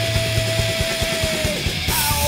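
Heavy metal band playing live: distorted guitars, bass and drums, with one long held high note that dips and stops about a second and a half in. A cymbal crash comes just before the end.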